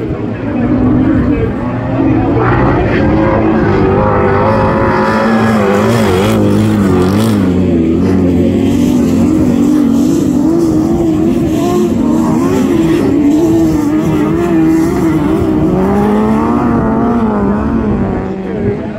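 Autograss saloon car engines revving hard as the cars race round a dirt track. The pitch rises and falls with the throttle and climbs again near the end.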